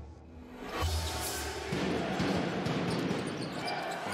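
A deep boom with a swoosh from the intro graphics about a second in. Then game sound from the basketball arena: crowd noise with a ball being dribbled on the court.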